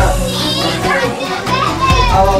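Lively voices of several people, children among them, talking and calling out over background music.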